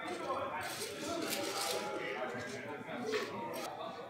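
Indistinct chatter of several people in a large hall, with a few clinks of dishes and utensils.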